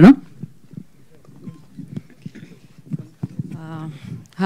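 Faint, scattered knocks and bumps from microphones being handled and passed between speakers, with a faint voice in the background near the end.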